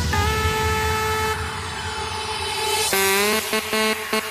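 Electronic dance music at a breakdown: the bass beat drops out and a sustained, horn-like synth chord holds, then about three seconds in the chord slides up and a chopped, pulsing rhythm starts.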